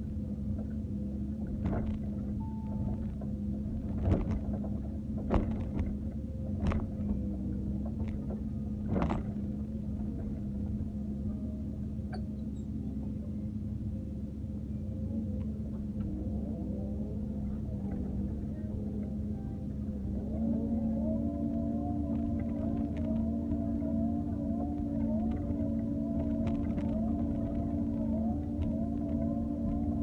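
Doosan wheeled excavator's diesel engine running steadily, heard from the cab, with several sharp knocks in the first ten seconds. About twenty seconds in, the engine gets louder and a wavering whine joins it as the arm and bucket are worked.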